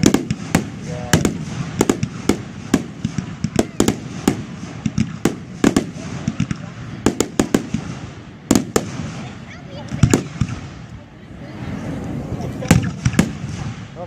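Fireworks display: a rapid string of sharp aerial shell bursts and reports, about two a second for the first half, thinning out with a brief lull before a few more bangs near the end.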